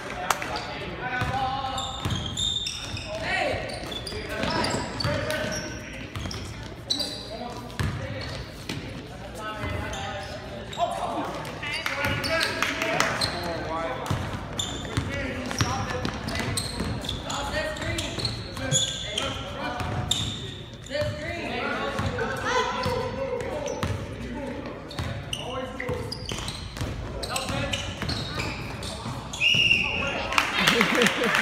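A basketball being dribbled and bouncing on a hardwood gym floor during a game, a scatter of short thuds throughout. Indistinct voices of players and onlookers run alongside.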